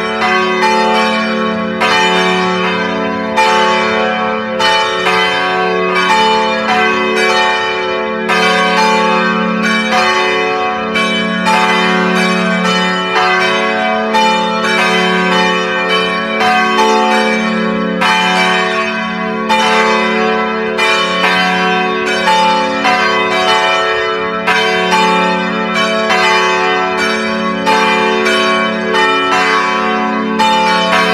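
Church bells pealing: a continuous, even run of strokes, about three a second, each ringing on under the next.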